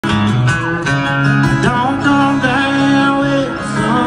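Live country band music with guitars, loud and steady, with a few sliding notes.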